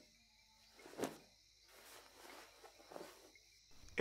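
Faint night ambience of crickets, with a few soft rustles, the loudest about a second in.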